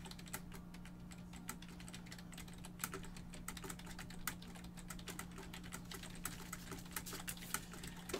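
Typing on a computer keyboard: faint, quick, irregular key clicks over a steady low hum.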